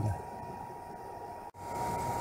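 Steady outdoor background noise with a thin, constant high tone running through it; about one and a half seconds in, the sound drops out for an instant at an edit and returns slightly louder.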